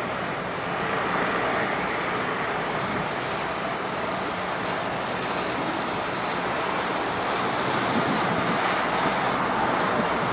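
Steady street traffic noise: a continuous wash of passing vehicles, a little louder from about a second in.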